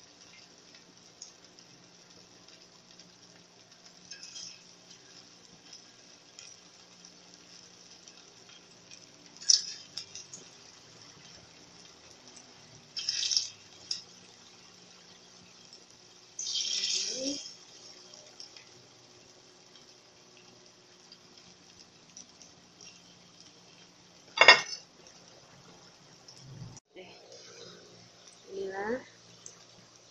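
Pieces of rice nugget dropping into hot cooking oil in a wok, giving a few short bursts of sizzling over a faint steady hum. Several sharp clacks come in between, the loudest about three-quarters of the way through.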